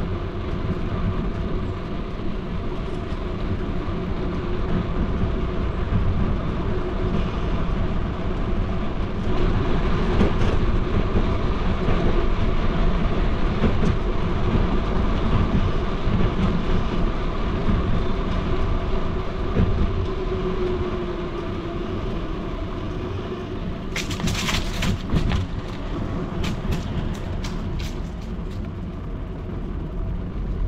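Steady rumble of travel along a street, with a constant hum running through it. A run of sharp clicks and rattles comes about 24 to 28 seconds in.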